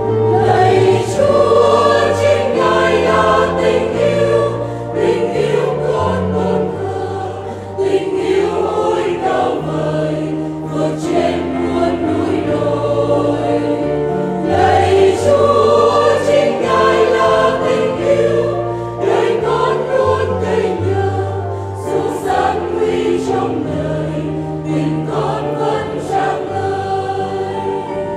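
Choir singing a Vietnamese Catholic hymn in harmony, one steady continuous passage.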